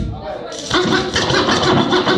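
Hip-hop backing track started by the DJ, kicking in loud through the club PA about two-thirds of a second in after a short quieter gap, with a steady low beat and turntable scratching.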